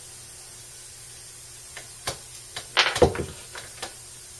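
A few light clicks and a short scrape as a metal broadhead is handled and fitted onto an arrow shaft. The scrape, just under three seconds in, is the loudest part.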